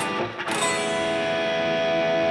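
Electric guitar from a Stratocaster-style solid-body, played with a pick. A note is struck right at the start, then a chord about half a second in that rings out and is held as the closing sound of a picking pattern.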